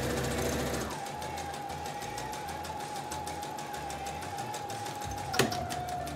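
Electric sewing machine stitching at speed: a rapid, even needle clatter over a steady motor whine, with one sharp click about five seconds in.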